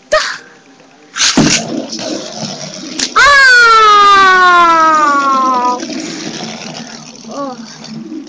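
A child's voice making a wrestling sound effect: a short rushing noise, then a loud, long cry that slowly falls in pitch for about two and a half seconds, followed by a brief rising squeak near the end.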